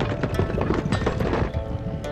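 Cartoon sound effects of heavy animal footfalls, ridden komodo rhinos trotting, over orchestral background music; the footfalls stop about one and a half seconds in, leaving only the music.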